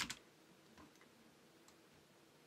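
Computer mouse clicks: a sharper click right at the start, then a few faint clicks about a second in and near the end, with near silence between them.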